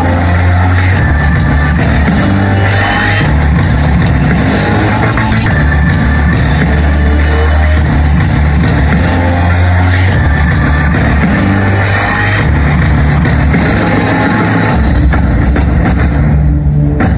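Loud show music over the sound system, with a deep bass line of long held notes that change pitch every second or two.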